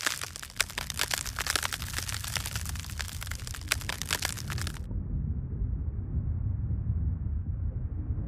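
Dense crackling and popping over a low rumble. About five seconds in, the crackle cuts off abruptly, leaving only a dull, muffled low rumble.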